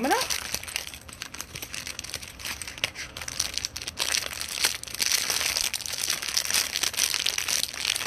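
Clear plastic jewelry packaging bag crinkling and crackling as it is handled and opened close to the microphone: a dense run of small crackles that grows busier about halfway through.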